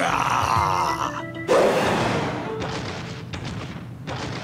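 Cartoon sound effects: a large cartoon dinosaur lets out a drawn-out, wavering vocal sound as it wakes up. At about a second and a half comes a sudden loud thud that fades away slowly, over background music.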